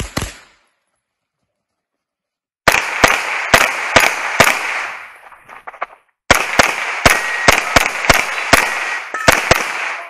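A single rifle shot at the very start, then rapid pistol fire in two strings, about two to three shots a second, with a brief pause just before the six-second mark.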